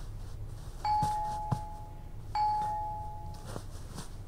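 Two-tone doorbell chime, a higher note then a lower one, rung twice about a second and a half apart, each ring followed by a short click.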